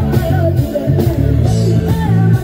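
Live band music played loud through a PA system: a woman singing a Hindi song over guitar and a heavy, repeating bass line.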